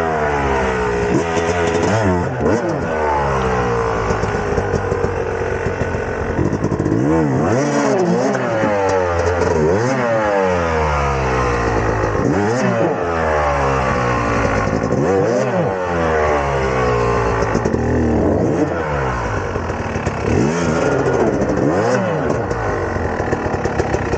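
Yamaha two-stroke dirt bike engine revved up and dropped back over and over, every second or two, as the rider tries to power the bike off a rock it is hung up on during a steep hill climb.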